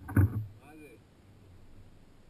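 A short, loud thump about a quarter of a second in, followed by a brief vocal exclamation, over quiet steady background.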